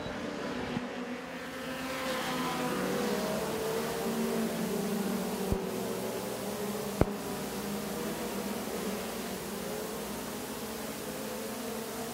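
Dirt-track stock car engines running at speed as a pack laps the oval, a steady buzzing drone whose pitch slowly rises and falls. Two short sharp clicks come in the middle.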